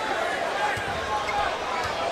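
A basketball being dribbled on a hardwood court under steady arena crowd noise, with several short sneaker squeaks.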